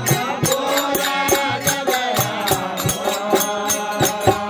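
Men singing a devotional folk chant together, accompanied by a quick, steady beat of jingling metal hand percussion at about four to five strokes a second.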